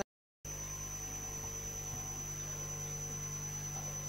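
Steady electrical mains hum with a thin high whine and faint hiss from the audio feed, with no speech. Just after the start there is a moment of dead silence where the audio cuts out.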